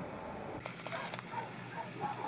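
A baby making faint, soft cooing sounds, with a few faint clicks as the camera is handled.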